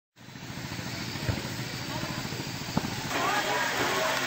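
Steady hiss of background noise with two short knocks, and faint voices joining about three seconds in.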